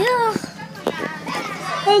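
Boys' voices: a short high-pitched falling vocal sound at the start, then quieter voices with a few sharp knocks, and a boy beginning to speak near the end.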